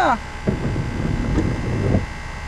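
Low steady rumble of a car running at idle, heard from inside the cabin.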